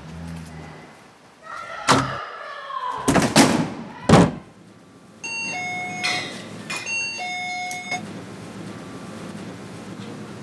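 Electronic shop-door entry chime ringing as the door is opened, a chord of steady tones sounding twice about two seconds apart. Before it come a few loud whooshing thuds, the loudest about four seconds in.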